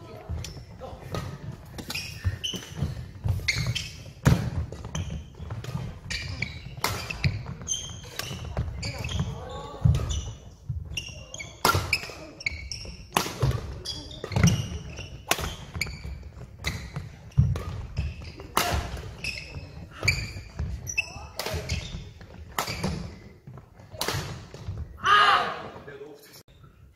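Badminton doubles rally on a wooden indoor court: sharp cracks of rackets striking the shuttlecock, roughly every second, with thudding footfalls on the floor, echoing in a large hall.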